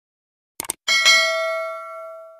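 A couple of quick clicks, then a bright bell chime that rings out and slowly fades: the sound effect of a subscribe button being clicked and its notification bell ringing.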